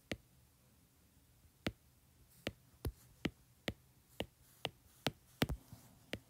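Stylus tip tapping on an iPad's glass screen as brush strokes are laid down, a string of sharp clicks. After a single tap at the start and a pause of about a second and a half, the taps come about two a second.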